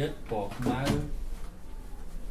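A man's voice speaking for about a second, then a pause over a low steady hum.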